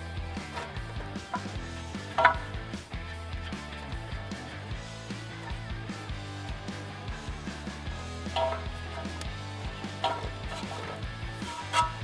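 Quiet background music under a few light metallic clicks and clinks, about 2 s in and again after 8 s, as a bolt is fitted by hand into the strut clamp of a car's front steering knuckle.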